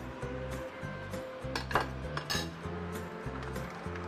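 Metal spoon clinking and scraping against a ceramic plate while pushing pieces of bell pepper off it into a pot: a few sharp clinks about a second and a half to two and a half seconds in.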